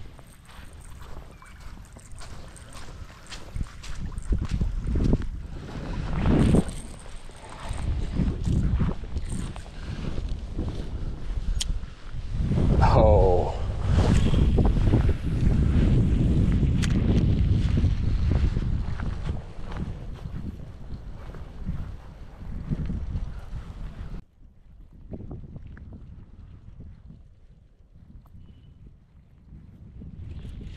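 Gusts of wind buffeting the microphone, with a low rumble at its strongest about halfway through. Short knocks from footfalls on wet grass run along with it. About three-quarters of the way in, the sound drops abruptly to a much quieter stretch.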